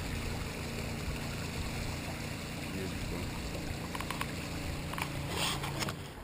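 Steady rush of river water running along the hull of a small wooden sailing boat working against a strong current, with a few light clicks near the end.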